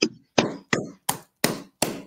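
One person clapping slowly and steadily, about six sharp claps at roughly three a second.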